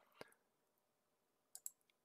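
Near silence with a few faint computer mouse clicks: one shortly after the start and two or three close together near the end.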